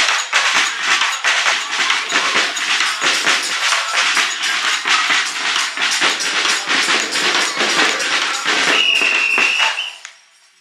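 A roomful of carolers clapping hands in a fast, steady rhythm along with a song. A single high, steady note holds for about a second near the end, and then the sound cuts off abruptly.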